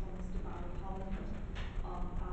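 Indistinct speech, a person talking at ordinary meeting level, over a steady low rumble of room noise.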